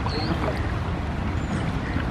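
Steady low rumble and wash of a river launch under way on rough water.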